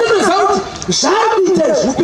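A man preaching loudly into a handheld microphone, his voice swooping up and down in pitch in short, emphatic phrases.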